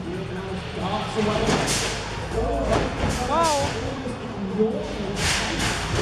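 Busy indoor arena sound: voices over a continuous noisy background with some music, rising in two louder surges about a second and a half in and again about five seconds in.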